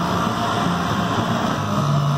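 Several industrial sewing machines running steadily together.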